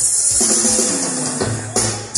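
A live regional Mexican band playing a huapango, with drum kit and tambourine keeping the beat. Near the end the band plays a few short hits with brief breaks between them.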